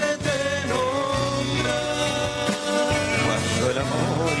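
Live folk band playing on stage: strummed acoustic guitars and a small ukulele-sized string instrument over a steady bass, with a male voice singing.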